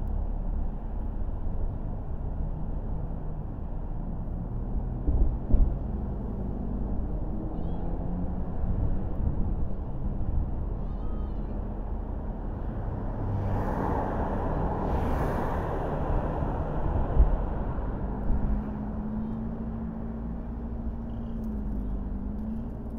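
Car driving: a steady low rumble of road and tyre noise with a few dull thumps, a louder rush of noise about two-thirds of the way through, and a low engine hum that rises and dips near the end.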